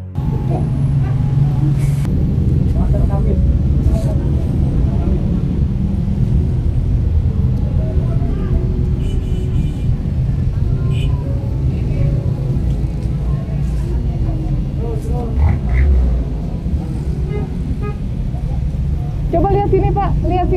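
Steady low rumble of road traffic, with faint voices now and then; a voice starts talking just before the end.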